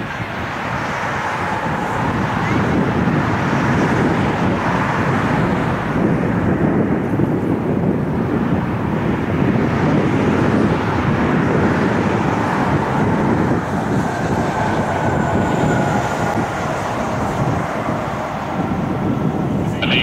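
Jet engines of a twin-engine Cathay Pacific airliner at takeoff power as it climbs away: a steady, loud rumbling roar that builds over the first couple of seconds, with a faint high whine over it in the second half.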